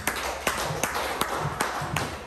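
A few sharp hand claps, about two to three a second.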